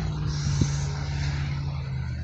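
A steady low engine hum holding one even pitch, over a light hiss.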